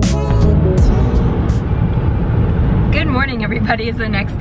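Steady road and engine rumble with hiss inside a moving car's cabin, taking over as music cuts off just after the start.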